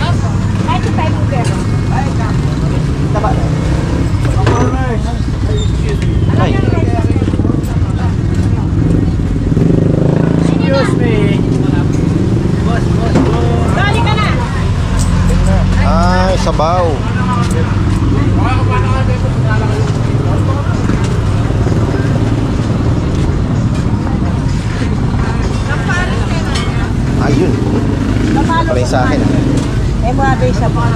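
Busy market food-stall ambience: several people talking indistinctly, with clear bits of voice now and then, over a steady low rumble.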